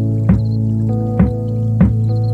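Background music: slow instrumental with held low tones and a few struck notes.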